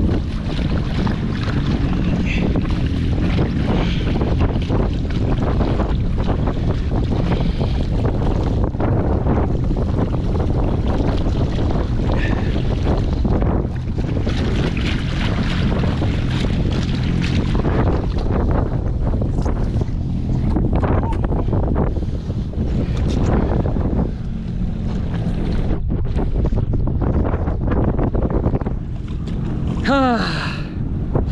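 Jet ski running slowly in gear, with water rushing and splashing along the side of the hull where a barracuda is held in the flow to revive it. Steady throughout, with a few brief dips in level in the last third.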